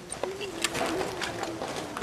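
A dove cooing: one low, steady call about a second and a half long, with a few sharp clicks around it.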